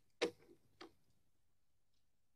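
Two sharp clicks a little over half a second apart, with a fainter one between them, followed by near silence.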